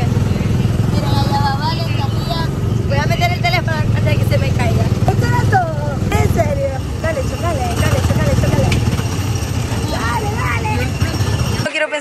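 Engine of a go-kart-style ride car running steadily with the accelerator held down, a loud low rumble with voices and laughter over it. It cuts off suddenly near the end.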